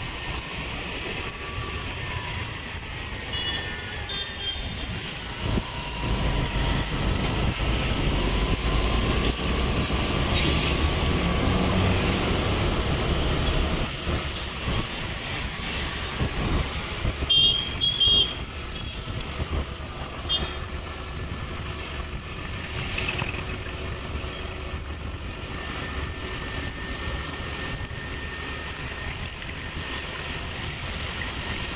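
Highway traffic dominated by a heavy container truck's engine and tyres, a low rumble that swells and then eases off over several seconds. Short high beeps sound a few seconds in, and a louder burst of them comes a little past halfway.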